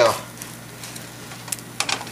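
Pancake batter sizzling faintly in a frying pan, with a few sharp clicks near the end as a spatula is worked under the pancake against the pan.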